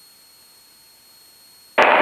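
Faint steady hiss of an aircraft headset and radio audio feed with no transmission on the frequency. Near the end a click, and another pilot's radio call starts.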